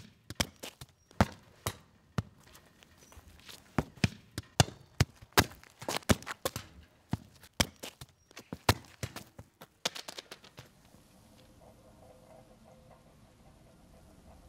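A quick, irregular run of sharp taps or knocks on a hard surface, a few each second. It stops about ten seconds in, leaving only a faint steady background.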